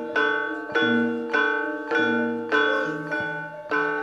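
Javanese gamelan playing: bronze metallophones struck together on a steady beat, a little under two strokes a second, each stroke ringing on into the next.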